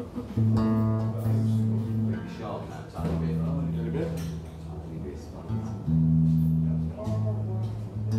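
Electric guitar through an amplifier sounding three long, single low notes in turn, each left to ring for one to two seconds, as the strings are tuned before a song. Murmured talk can be heard between the notes.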